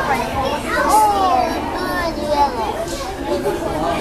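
Children's voices, one calling out in a high gliding voice about a second in, over the background chatter of other people in a public indoor space.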